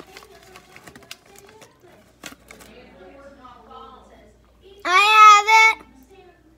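A young girl's voice: after some soft murmuring, one loud, high, held vocal sound about five seconds in, rising at its start and breaking briefly near its end. A few faint clicks come earlier.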